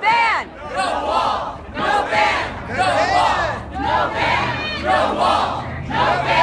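Crowd of protesters chanting a short slogan in unison, many voices shouting together in a steady rhythm of about one call a second.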